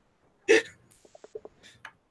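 A man's single short, hiccup-like burst of laughter about half a second in, followed by a few faint short sounds.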